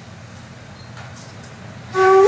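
Low room ambience, then right at the end a daegeum, a Korean bamboo transverse flute, starts a loud sustained note.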